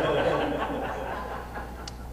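Light chuckling laughter, fading away over the first second and a half.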